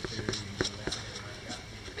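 A few faint, light clicks and taps, about three or four a second, over a low steady room hum.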